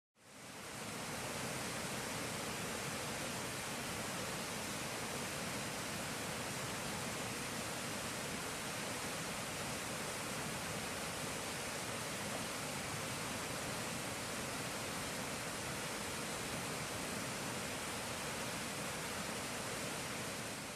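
Steady rush of a river running over rocks through rapids, fading in at the start and then holding even.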